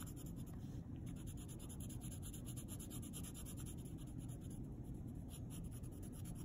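Green coloured pencil lightly rubbing back and forth on paper, a faint steady scratching of soft strokes, laying a light layer over yellow to blend them.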